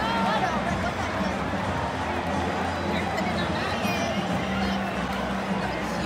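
Ballpark crowd chatter and murmur with music playing over the stadium speakers, steady throughout.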